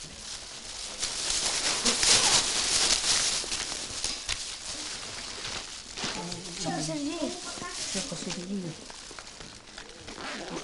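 Plastic bag and wrapped sweets rustling and crinkling as candy is tipped between a backpack and a bag, loudest over the first few seconds. Voices talk briefly from about six seconds in.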